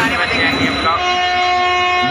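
A train horn sounds about a second in, one steady held note, over the low rumble of a train starting to pull out of the station.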